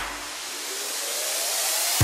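A rising whoosh used as a music transition: a high-pitched hiss that swells steadily in loudness, with a faint tone gliding upward, ending abruptly.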